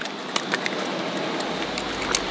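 Steady rushing of river water, with a few short sharp clicks and small splashes as a fish is grabbed from shallow water among rocks, and a low rumble coming in about one and a half seconds in.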